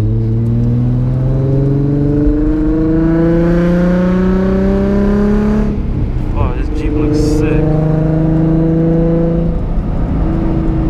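Nissan 350Z's 3.5-litre V6 heard from inside the cabin, its pitch climbing steadily as the car accelerates through a gear for about six seconds. A short break follows as the gear changes, then the engine runs at a steady pitch.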